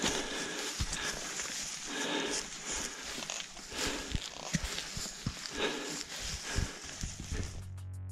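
Footsteps through tussock grass and heavy breathing from climbing a steep hillside under a heavy load, with uneven thuds of boots and gear. Music comes in shortly before the end.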